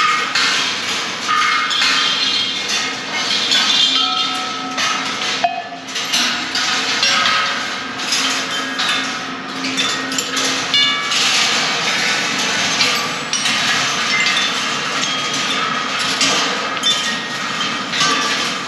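George Rhoads' 1974 Electric Ball Circus rolling-ball sculpture running: balls rattle along wire tracks and knock into its percussion pieces. The result is a continuous busy clatter, with short ringing tones at many different pitches.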